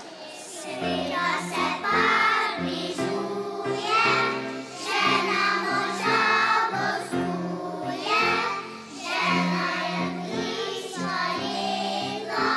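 A kindergarten children's choir singing a song together, starting about a second in.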